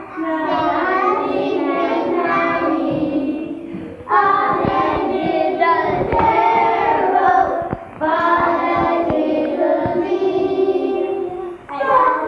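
A class of young schoolchildren singing a song together, in phrases broken by short pauses about every four seconds.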